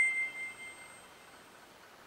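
UHANS A101 smartphone's boot-up jingle from its loudspeaker: a final bell-like note rings out and fades within about a second. The phone's speaker sounds normal.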